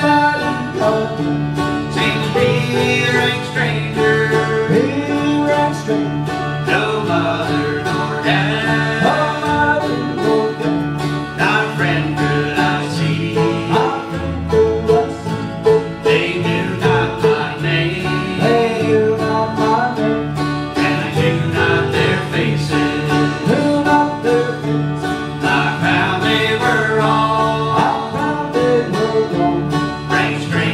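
Live bluegrass band playing: five-string banjo, mandolin and acoustic guitar over a steady electric bass line.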